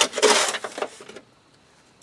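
Shovel blade scooping topsoil out of a metal wheelbarrow: a scraping crunch, loudest in the first half second and tailing off by about a second in.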